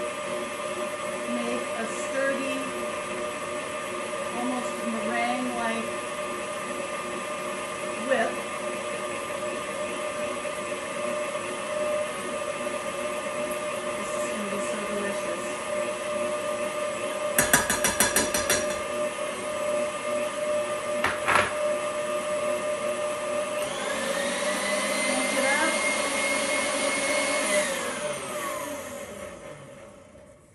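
Electric stand mixer whipping aquafaba on medium speed: a steady motor whine, with a few sharp clicks and a brief rattle from a spoon as powdered sugar is added. Near the end the whine rises in pitch, then winds down and stops as the mixer is switched off.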